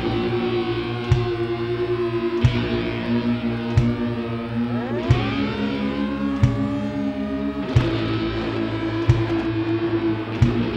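Rock band instrumental: electric guitar, bass and drums, with a sharp drum hit about every second and a third. About five seconds in, guitar notes slide up in pitch.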